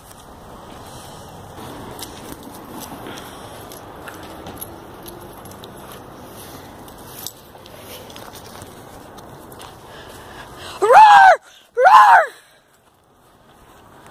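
Low outdoor rustle of a phone being handled and carried over grass. Then, near the end, two short, loud calls about a second apart, each rising and then falling in pitch.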